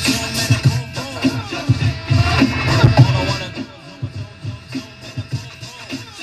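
Music with a heavy bass beat from an FM radio station, played by an Onkyo TX-910 stereo receiver through a single loudspeaker. About three and a half seconds in it drops markedly in level.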